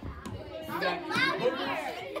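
Children's voices talking and calling out in high pitches, starting about half a second in.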